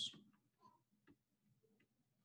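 Near silence with two faint clicks about half a second apart, a stylus tapping a pen tablet while dots are drawn.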